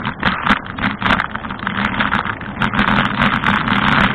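Bicycle ride heard through a bike-mounted camera: steady wind and rolling road noise with many small rattling clicks as the bike rolls over jointed concrete paving.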